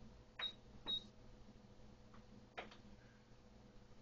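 Ultrasound scanner console keys clicking, faintly. The first two presses, about half a second apart, each give a short high beep; a plain click follows a little after two seconds and another at about two and a half seconds. The presses come as the measurement calipers are placed for the nuchal translucency reading.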